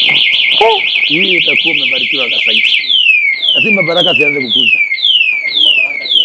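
Motorcycle anti-theft alarm going off: a loud fast-warbling electronic tone for about three seconds, then switching to a repeated falling whoop about twice a second, with men's voices over it.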